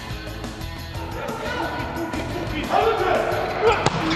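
Music playing over a volleyball arena's PA with voices shouting, and a single sharp smack near the end, a volleyball being served.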